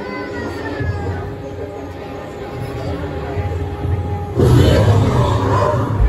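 Background music from the exhibit's speakers over a steady low hum, then a sudden louder burst of sound about four and a half seconds in.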